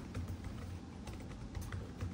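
A few faint, scattered key clicks from a laptop keyboard pressed to advance to the next presentation slide, over a low steady room hum.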